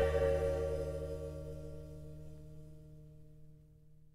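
The closing chord of a heavy blues-rock track, with a deep bass note under it, dying away steadily over about four seconds into silence.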